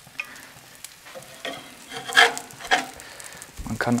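Metal spatula scraping on a hot plancha as it slides under frying pizza patties: a few short scrapes, the loudest about halfway through, over a faint steady sizzle.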